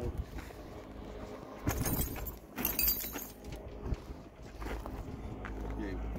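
Metal clanking and rattling from a livestock trailer, in two short clusters a little under a second apart about two seconds in, followed by lower shuffling.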